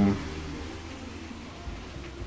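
The tail of a drawn-out "um" right at the start, then faint, steady background noise with a low hum and no distinct events.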